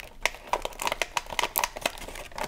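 Clear plastic wrapping on a small cardboard game box crinkling as hands turn and handle it, a quick irregular run of small crackles.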